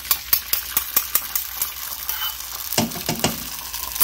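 Beaten eggs sizzling as they are poured into a hot frying pan, with quick clicks and scrapes of a fork against a stainless steel mixing bowl as it is scraped out.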